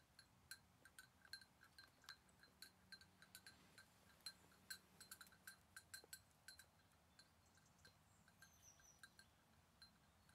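Small bell on a goat's collar clinking irregularly as the goat walks, the strokes growing sparser and fainter after about seven seconds as it moves off.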